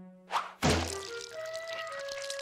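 Cartoon sound effect of a milk carton being slammed down over a character's head: a quick swish, then a sudden hollow thunk just after half a second in. Held music notes follow.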